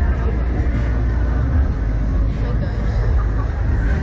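Steady wind rumble buffeting the onboard camera microphone of a Slingshot reverse-bungee capsule as it swings through the air, loud and unbroken.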